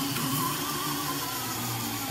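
Small bench drill press motor running steadily at part speed under its foot-pedal control, a whine with several tones, as the spinning bit is lowered to drill through thin sheet metal.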